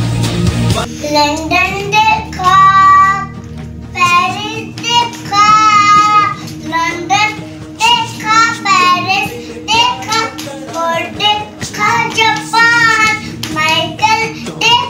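A short burst of music cuts off abruptly within the first second, then a young boy sings solo, in phrases of held notes with a wavering pitch separated by short breaths.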